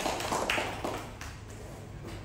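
Brief hand clapping from a small group in a room, thinning out and fading about a second in.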